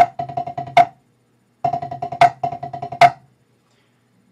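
Drumsticks playing seven-stroke rolls on a practice pad: runs of quick, even bounced strokes, each ending on a louder accented stroke. There are four accents in all: the playing breaks off for about half a second a second in, resumes, and stops a little after three seconds.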